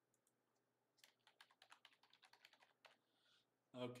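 Typing on a computer keyboard: a quick, faint run of key clicks starting about a second in and stopping shortly before the end.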